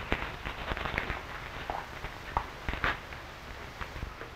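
Irregular clicks and pops over a steady low hiss: the surface crackle of an old film soundtrack.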